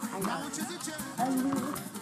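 Music playing with a singing voice.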